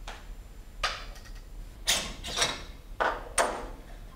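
Air spring of a DT Swiss Single Shot 2 OPM suspension fork pushed out against its Smalley retaining ring and back into the upper tube, making about six short sliding clunks. It is a check that the ring sits correctly in its groove.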